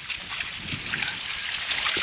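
Splashing steps through shallow, muddy floodwater, with wind buffeting the microphone.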